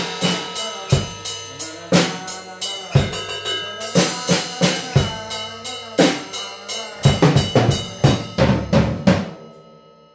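Acoustic drum kit played in a groove with a strong accent about once a second and lighter strokes between. It is busier in the last few seconds, then stops about nine seconds in, the kit ringing out and fading.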